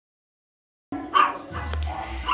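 Silence for about the first second, then a dog barks just after a second in, with music playing in the background.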